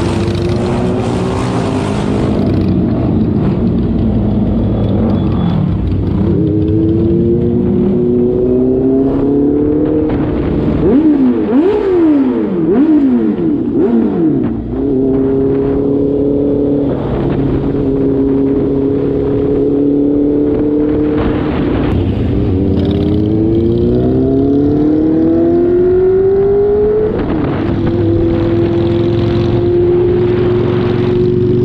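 Honda CBR650R inline-four engine pulling up through the gears, its pitch climbing in steps between shifts. About a third of the way in the throttle is blipped up and down quickly several times. It then holds a steady cruise and accelerates again, rising in pitch, near the end.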